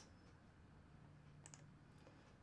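Near silence with one faint computer mouse click about one and a half seconds in, and a fainter one near the end.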